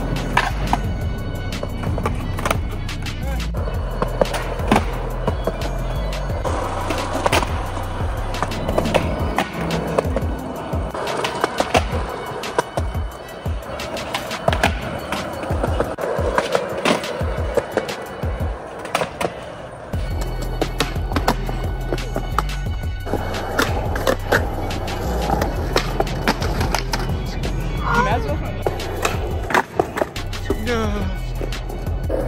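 Skateboard wheels rolling on smooth concrete, with repeated sharp clacks of tail pops and board landings from flip tricks. Background music with a steady bass line runs underneath and changes abruptly about two-thirds of the way through.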